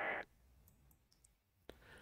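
A single sharp computer mouse click about three-quarters of the way through, against quiet room tone, with a faint breathy hiss at the very start.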